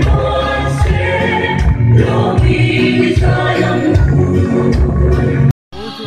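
A choir singing gospel music with instrumental accompaniment, cutting off suddenly shortly before the end.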